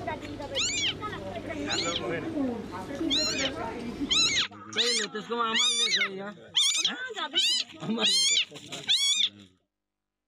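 A leopard cub mewing: a run of about ten short, high-pitched mews that rise and fall, spaced unevenly, stopping abruptly near the end. It is a lone young cub calling while separated from its mother.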